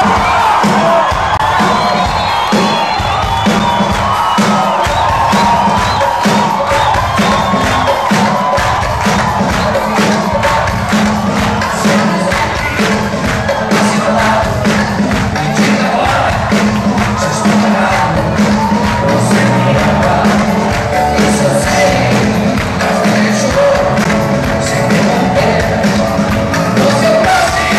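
Rock band playing live through a loud PA, with drums, bass and electric guitars, over a cheering crowd. The music starts abruptly right at the beginning and runs on at full volume.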